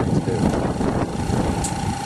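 Homemade PVC airlift pump gurgling and surging as air bubbles drive slugs of water up the pipe and out of the tee at the top, with a small tire-inflator air compressor running. A steady whine joins about halfway through.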